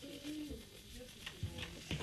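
Faint, indistinct voices in a small room, with a short low hum-like voice tone in the first half-second. Two light knocks come in the second half.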